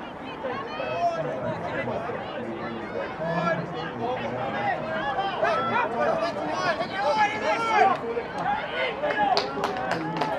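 Several voices calling out and talking over one another, none clear enough to make out words: touch football players and people at the ground.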